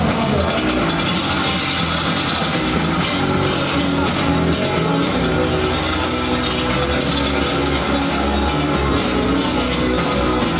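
Live band playing loud, steady music with electric bass guitar and drums, the bass line stepping from note to note.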